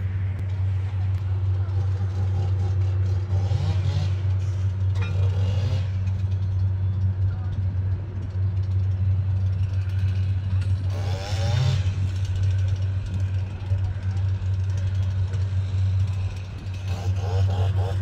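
Steady low drone of the diesel engine on a railway track-laying machine running continuously.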